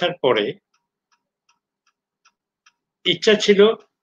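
A man speaking Bengali in two short bursts, with a pause of about two and a half seconds between them. Faint ticks can be heard in the pause.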